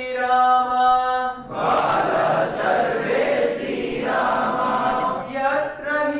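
A group of voices chanting a song in unison, in long held notes. In the middle the voices blur into a dense, hoarse-sounding stretch before the held notes return.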